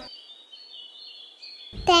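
Faint high, thin bird chirps and twittering. Near the end a child's voice comes in.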